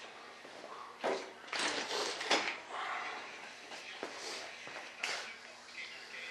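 A brush working resin into fibreglass cloth: a few short, rough swishes, the loudest group between about one and a half and two and a half seconds in.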